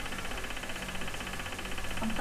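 Steady low hum under quiet room noise, with a faint fast ticking high up.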